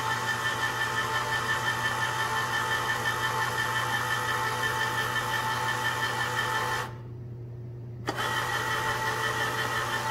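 Hamilton Beach Smooth Touch electric can opener running with a steady motor whine as it turns the can and cuts around the side of the rim. It cuts out for about a second near the seventh second, then starts again with a click.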